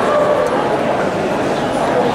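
Many voices shouting over one another, a loud, continuous crowd noise with no break.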